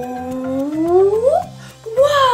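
A woman's voice holding a long 'ooooh' that rises steadily in pitch for about a second and a half, then breaks off, over light background music.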